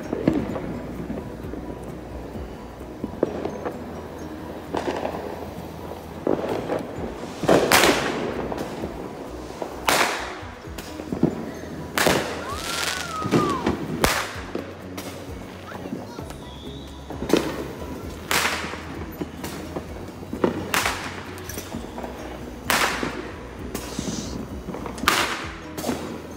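Fireworks and firecrackers going off, about a dozen sharp bangs at irregular intervals with short echoing tails, the loudest about eight seconds in.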